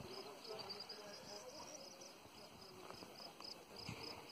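Faint, steady insect chirping, a regular pulse of short high chirps about three to four times a second.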